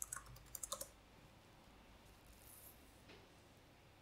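A short run of computer keyboard clicks in the first second, then near silence: room tone.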